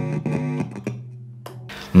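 Electric guitar struck once and left ringing, fading slowly, then cut off suddenly near the end.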